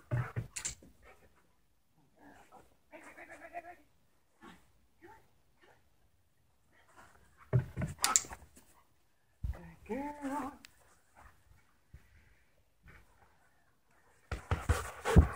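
A dog moving and jumping during trick training: a few sharp thumps, the loudest about eight seconds in, with lighter scuffles between them and a short voiced sound about ten seconds in.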